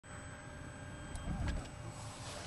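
Steady low rumble of a vehicle engine running, with a couple of short clicks and a brief louder low surge about one and a half seconds in.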